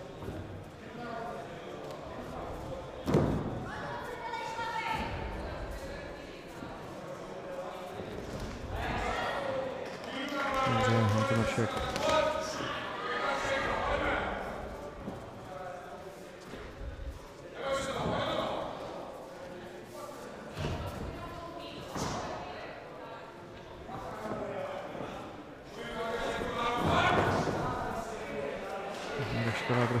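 Men shouting in a large hall over a mixed martial arts bout, with a few sharp thuds from strikes and bodies hitting the mat, the loudest about three seconds in.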